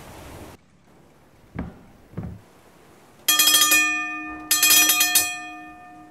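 Two low knocks about half a second apart, then a ship's engine-room telegraph bell rings twice, each ring struck sharply and fading slowly, as the telegraph is rung on to full ahead.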